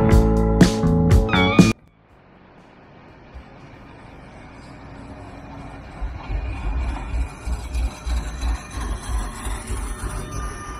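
Guitar background music cuts off suddenly a little under two seconds in. Then a street tram comes closer and passes, its rumble on the rails growing louder, with thin high tones over it.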